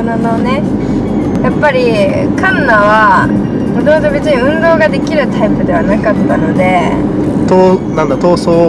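Mostly conversation; underneath it, the steady low rumble of a car being driven, heard from inside the cabin.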